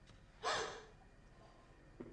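A woman's short, sudden gasp about half a second in, breath drawn in sharply once.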